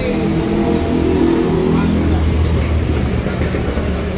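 Intercity bus's diesel engine running close by, a steady deep rumble.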